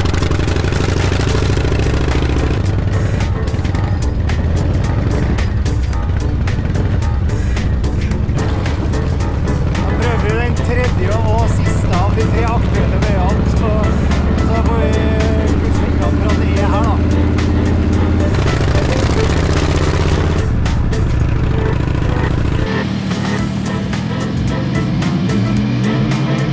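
Motorcycle engine running steadily while riding, mixed with background music. Near the end the low engine sound thins out while the music goes on.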